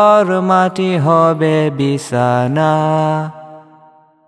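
Male vocals singing a Bangla nasheed, with long held notes that bend in pitch, fading out near the end at the close of a line.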